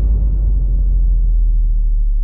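The deep, sustained rumble tail of a cinematic logo-reveal sound effect. The higher ring of the opening hit dies away, leaving a steady low boom.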